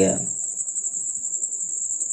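Steady, high-pitched insect trilling, with a slight pulse.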